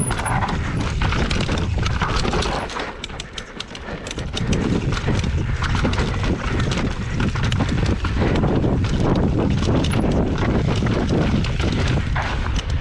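Enduro mountain bike clattering down a rocky trail: knobby tyres knocking over rock and the bike rattling in quick, irregular clicks over a steady low rumble. It quietens briefly about three seconds in, then picks up again.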